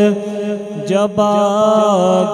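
A man singing an Urdu naat into a microphone over a steady sustained drone; his voice comes in about a second in with a held, wavering line.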